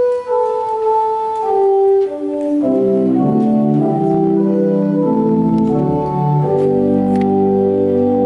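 Church organ playing a hymn introduction: a single sustained melody line at first, then full held chords from about two and a half seconds in.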